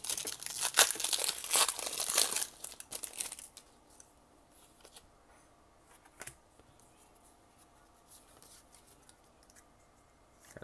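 A foil Pokémon booster pack wrapper being torn open by hand, with crackling and crinkling, for the first three seconds or so. After that it is nearly quiet, apart from one faint click about six seconds in.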